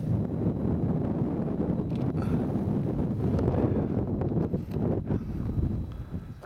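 Wind buffeting the camera's microphone: a steady low rumble that rises and falls throughout.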